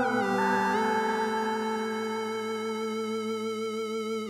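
Electronic synthesizer music from a song made in the Korg Gadget app: layered sustained synth chords with no beat, the notes stepping to new pitches now and then, slowly getting quieter.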